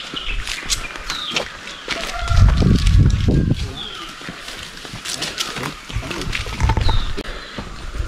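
Outdoor ambience of scattered short, falling bird chirps over bouts of low rumbling from wind on the microphone.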